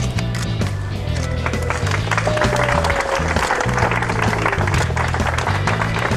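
Crowd applauding over background music with a steady, stepping bass line; the clapping builds about a second and a half in and eases off near the end.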